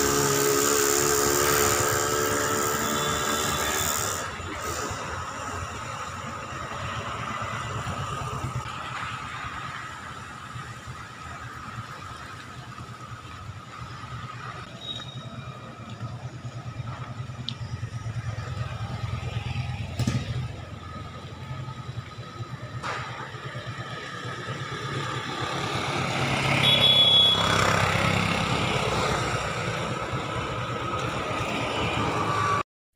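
Street traffic: a motor vehicle's engine is loudest for the first few seconds, then fades into a steady background rumble of traffic, with a few sharp clicks and a swell in loudness near the end.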